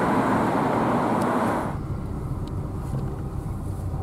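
Road and tyre noise heard from inside a moving car. It drops off suddenly about two seconds in, leaving a quieter low rumble.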